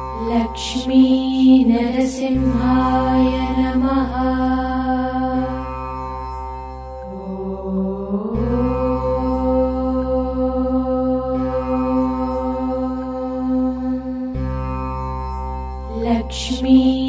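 Devotional music for Lord Narasimha: a mantra-style chant over a continuous drone, with a slow upward pitch slide about halfway through.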